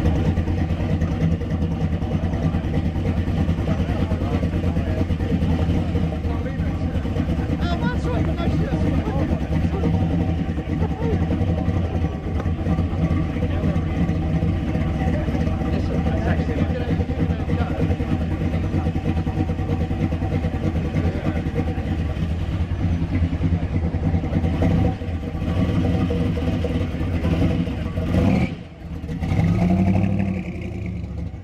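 A classic car's engine idling steadily close by, then revving with a rising note as the car pulls away near the end.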